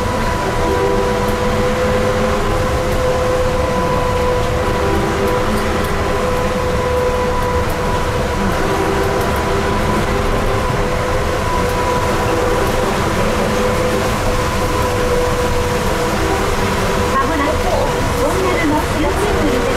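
Electric trolleybus running at a steady speed through a rock tunnel, heard from inside the cabin: a continuous rumble of the ride with a steady, even-pitched whining hum over it.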